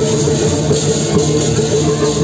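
Balinese baleganjur gamelan playing loud, continuous percussion music, with sustained ringing tones over dense drum and cymbal texture, mixed with the din of a large crowd.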